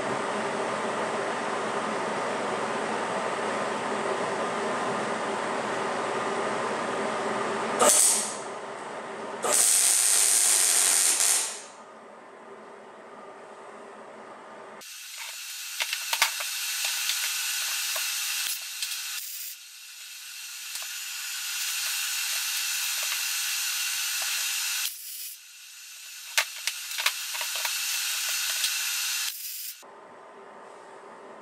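MIG welder tack-welding threaded bungs into a lower control arm: the arc hisses and crackles in several stretches of a few seconds each, with short breaks between.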